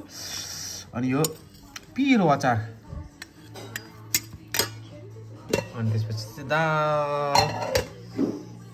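A metal spoon clinking against stainless steel bowls and dishes several times, over music with a singing voice.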